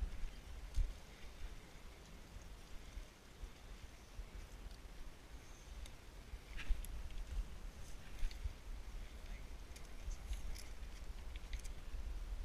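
Footsteps on limestone rock and loose gravel: scattered crunches, scrapes and clicks, a little busier in the second half, over a low uneven rumble of wind buffeting the microphone.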